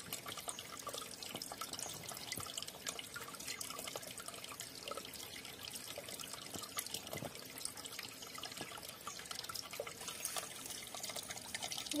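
Shallow stream water trickling over rocks, with small drips and splashes as a hand moves about in the water among the stones.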